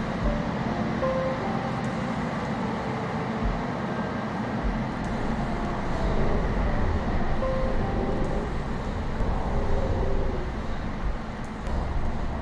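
Steady low rumble of a moving vehicle, with music faintly underneath.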